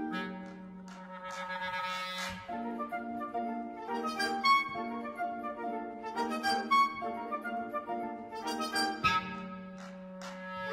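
Solo clarinet playing quick runs of notes with a military concert band accompanying, over a held low note that drops out about two seconds in and returns near the end.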